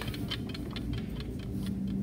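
Quick, even ticking, about ten ticks a second, that fades out past the middle, with a faint low hum near the end.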